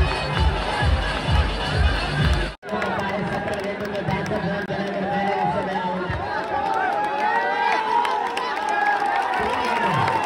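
Loud music with a heavy, regular beat over a crowd, cut off suddenly about two and a half seconds in. After that a large crowd shouts and cheers, many voices overlapping.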